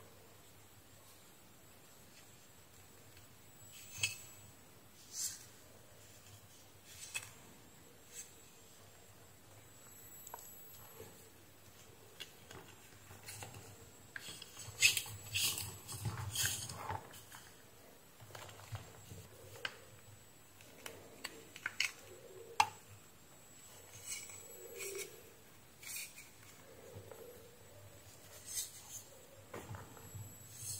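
Faint handling noise of a headset cable and heat-shrink tubing being worked by hand, with stripped wire ends twisted together for a joint. It is made of scattered small clicks and rustles, with a busier, louder run of them about halfway through.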